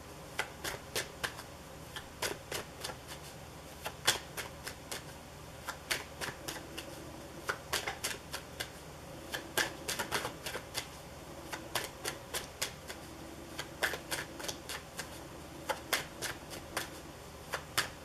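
A tarot deck being shuffled overhand, cards dropped from one hand onto the other in quick, irregular clicks and flicks, several a second.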